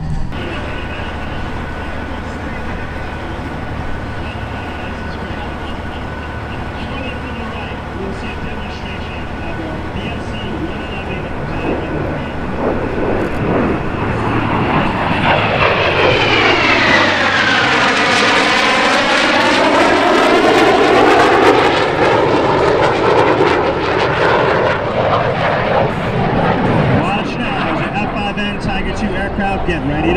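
Formation of F-5N Tiger II fighters flying past, the jet noise of their twin J85 turbojets steady at first, then growing louder from about twelve seconds in. At its loudest, the pass carries a whooshing whine that sweeps down in pitch and then back up.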